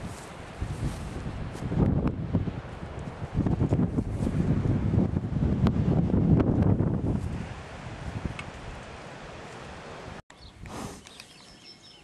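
Wind buffeting the microphone outdoors, an uneven low rumble that swells in the middle and eases off. Near the end the sound cuts abruptly to a quieter outdoor background.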